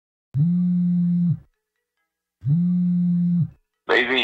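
Two identical long electronic tones, each about a second long and a second apart, at one steady low pitch; music starts right at the very end.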